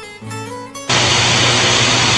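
Acoustic guitar music, cut off about a second in by a sudden loud hiss of TV-style static with a low hum underneath.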